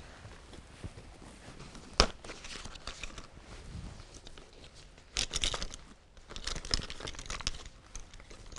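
Rustling and crinkling as ear defenders and safety glasses are put on. A single sharp click comes about two seconds in, and bursts of rustling follow past the middle and again toward the end.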